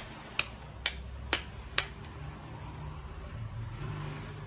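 Five sharp clicks, evenly spaced about half a second apart, then a low steady hum.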